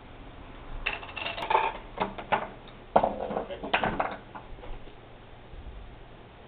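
Homemade Rube Goldberg machine of wood, plastic cups and pool-noodle tracks running: a series of clattering knocks and rattles as small wooden blocks topple and a ball rolls and drops down the tracks. The sharpest knock comes about three seconds in, and the clatter dies away after about four seconds.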